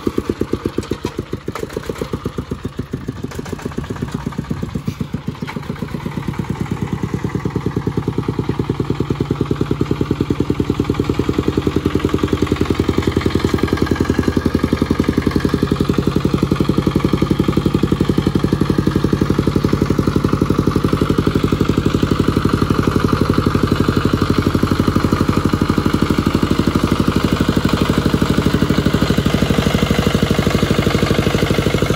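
Single-cylinder diesel engine of a công nông farm vehicle running with a rapid, even firing beat, growing louder and steadier after about ten seconds.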